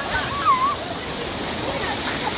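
Fast-flowing stream water rushing steadily over rocks, with a child's short high shout near the start.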